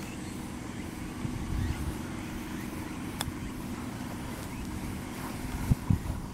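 A sand wedge chip shot played from just off the green: one crisp click of the clubface on the ball about three seconds in. A steady low rumble runs underneath, with a couple of low thumps near the end.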